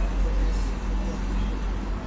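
A steady low rumble with indistinct voices in the background.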